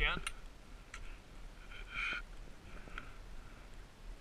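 Faint scrapes of skis on snow with a few sharp clicks. The loudest scrape comes about two seconds in and a smaller one near three seconds.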